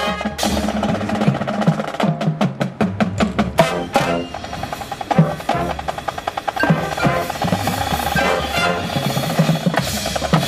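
Marching band percussion playing a drum-led passage: snare drum strokes and rolls over bass drums, with pitched tones from the front-ensemble percussion underneath. Between about two and three and a half seconds in comes a quick run of sharp, evenly spaced strokes, about five a second.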